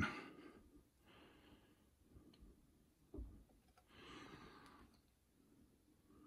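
Near silence: room tone with faint breaths and one soft, low thump about three seconds in.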